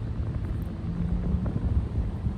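Wind buffeting the phone's microphone, a steady low rumble, with a faint hum about a second in.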